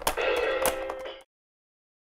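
VTech Strum & Jam KidiBand toy guitar playing electronic guitar notes as its strings are strummed, with a few sharp clicks. The sound cuts off suddenly after about a second.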